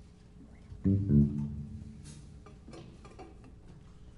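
Bass guitar plucking two low notes about a second in, each ringing and fading, followed by faint scattered clicks and taps.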